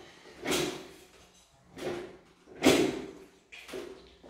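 A metal lever-arm citrus press worked by hand, squeezing lemon halves: four clunks and scrapes about a second apart as the lever is pulled down and lifted, the loudest near three seconds in.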